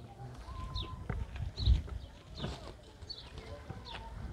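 Birds calling, with one short high chirp repeated about every half second to second and a few whistled notes. Low thumps and rustling sit under the calls, the loudest thump just before the middle.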